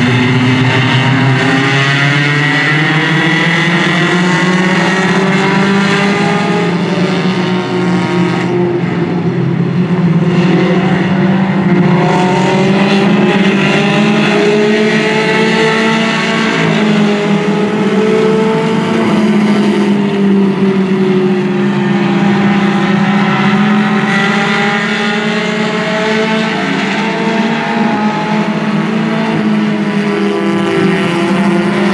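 A pack of Mini Stock and Hornet race cars, small four-cylinder compacts, running laps on a paved oval. Several engines sound at once, their pitches rising and falling as the cars accelerate and lift through the turns.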